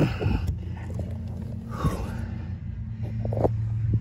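A few faint clicks and handling noises as the oxygen sensor's wiring connector is worked loose by hand, over a steady low hum. One click comes about half a second in, one near the middle, and two close together near the end.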